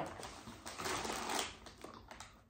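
Rustling and crinkling of something being handled, loudest for about a second in the middle.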